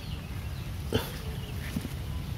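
A brief animal call about a second in, and a fainter one shortly after, over a low steady rumble.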